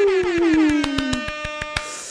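Edited-in sound effect: a buzzy pitched tone gliding steadily downward for about a second and a half, with a fast, even rattle of clicks running through it. It cuts off near the end, followed by a brief hiss.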